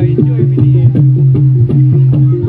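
Loud accompanying music for the horse dance, in a gamelan style: quick drum strokes with falling pitch bends, about four to five a second, over repeated pitched notes and a low held tone.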